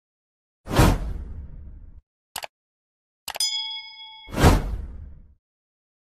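Edited outro sound effects for an animated title card: a whoosh-hit that fades out, a short glitchy double click, then a click followed by a bright chime ringing for about a second, and a second whoosh-hit fading out.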